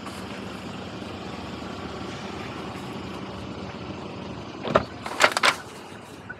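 Steady outdoor street noise, then near the end a few sharp clunks and clicks as a car door is opened and someone climbs into the driver's seat.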